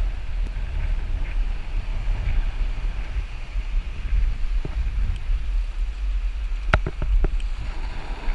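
Wind rumbling on the microphone over the wash of shallow sea water across a rocky reef. A sharp click comes about seven seconds in, followed by a few fainter ones.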